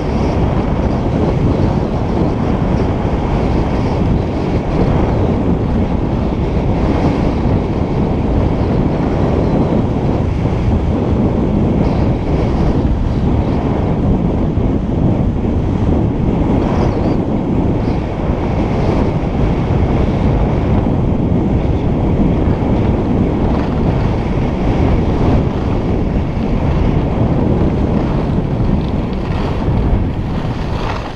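Wind buffeting the microphone of an action camera carried by a skier moving fast downhill: a loud, steady rushing noise.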